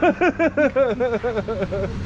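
A person laughing: a quick run of about a dozen short 'ha' sounds, about six a second, each rising and falling in pitch and trailing a little lower towards the end.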